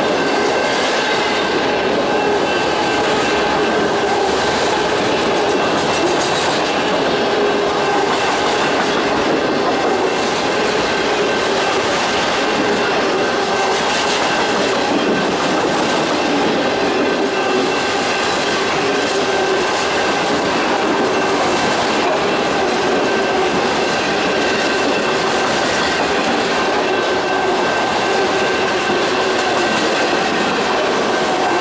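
Autorack freight cars of a long CSX manifest train rolling past close by: a steady clatter of steel wheels on jointed rail, with a thin, steady high squeal from the wheels running through it.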